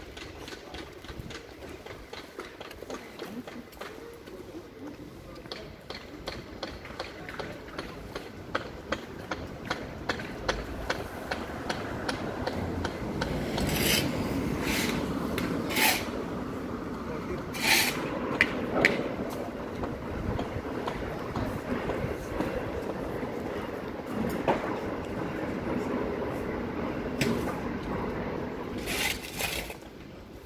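Footsteps on a city pavement, about two steps a second, over street background noise. Around the middle a broad rushing noise swells up, broken by several short hissing bursts, another near the end.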